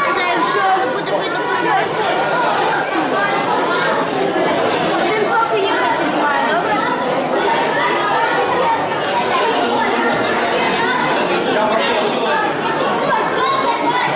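Indistinct chatter of many people talking at once in a large hall, steady throughout.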